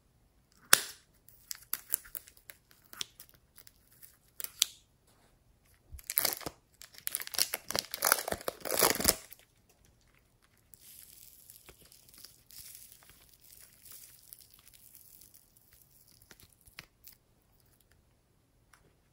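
Plastic wrapper on a block of modelling clay snipped with scissors, then crinkled and torn off, the tearing loudest from about six to nine seconds. A softer steady rustle follows as the clay is worked by hand.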